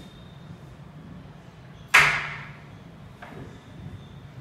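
A single sharp clack from a wall-mounted fold-down table's mechanism, about two seconds in, with a short ringing tail; a much fainter click follows about a second later.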